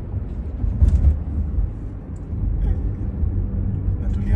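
Road and tyre noise inside the cabin of a Jaguar I-PACE electric car driving at about 33 mph: a low steady rumble, with a brief louder thump about a second in.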